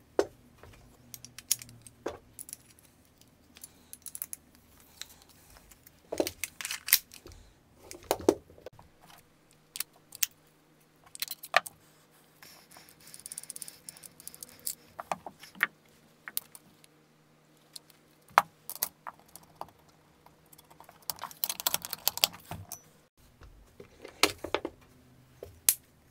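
Hands loading 12-gram CO2 cartridges into air pistols: irregular clicks and small metallic clatter as magazines, grip panels and cartridge screw caps are handled, turned and snapped into place, with a few denser bursts of rattling.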